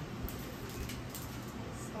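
Quiet kitchen background: a low steady hum with a few faint, light clicks spread through it.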